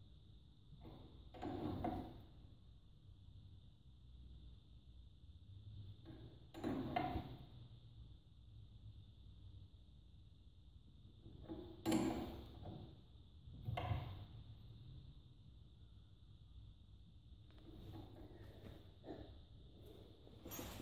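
A few short, widely spaced metal clicks and knocks from a wrench slowly tightening the screw of a ball joint separator, the loudest about twelve seconds in, over a faint steady background; the ball joint has not yet popped loose.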